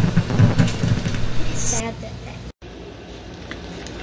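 A man's low voice with some bench handling noise, then an abrupt cut about two and a half seconds in to a faint, steady low hum.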